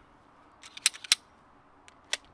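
A few sharp metallic clicks from 9 mm cartridges and a pistol magazine being handled. The two loudest come close together about a second in.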